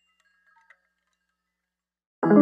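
Near silence: the faint, fading tail of chime-like tinkling background music, a few soft ringing notes that die out just before the end.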